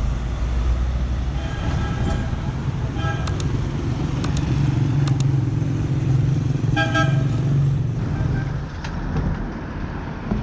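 Street traffic: engines of passing vehicles, including a motorcycle, run steadily. Several short car-horn toots sound over it, at about two and three seconds in, and the clearest about seven seconds in.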